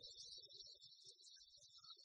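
Near silence: faint sports-hall ambience with a thin, steady high-pitched chirping hiss and a few soft, scattered low thuds.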